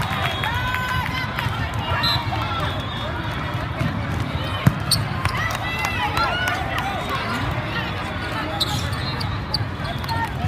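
Volleyball rally on an indoor sport court: many short rising-and-falling squeaks of players' shoes on the court surface, with a sharp knock of the ball being struck near the middle, over a steady background of voices from players and spectators in a large echoing hall.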